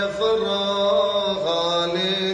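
Chanting of a Syriac Orthodox Kukilion hymn, with long held notes that move to a new pitch at each change of syllable.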